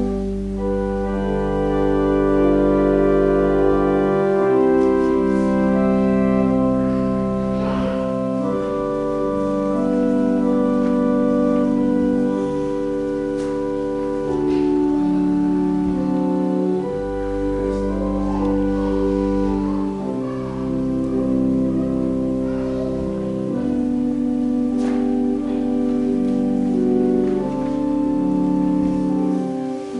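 Church organ playing slow, sustained chords that change every second or two, over long, deep pedal bass notes.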